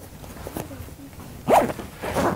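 Rummaging in a backpack, with one short, loud zip of its zipper about one and a half seconds in.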